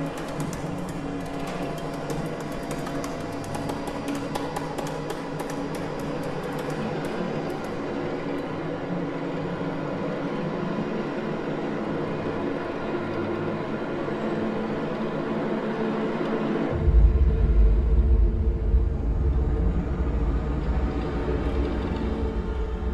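Contemporary chamber ensemble with electronics playing a dense texture of many held pitches, with rapid high ticking that thins out and stops over the first several seconds. About seventeen seconds in, a deep low rumble enters suddenly and the music grows louder.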